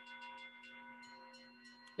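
Faint background music under the talk: a steady held tone with overtones, with a higher tone joining about halfway through.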